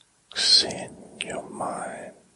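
A man whispering a short phrase close to the microphone. It opens with a sharp hissing consonant.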